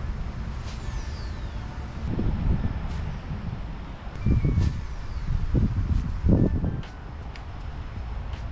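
Wind buffeting the microphone in uneven gusts, the strongest near the end, with a few faint clicks.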